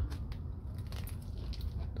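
Faint, scattered small clicks over a low steady rumble.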